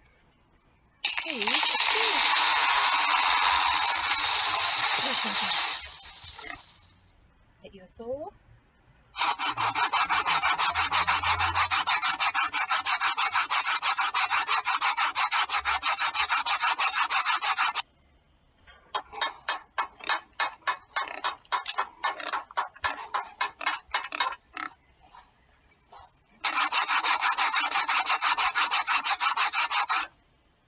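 Hand saw cutting wood: a long run of fast, even strokes, then slower separate strokes, then another run of strokes near the end. A bright hissing noise comes first, about a second in, and stops sharply after about five seconds.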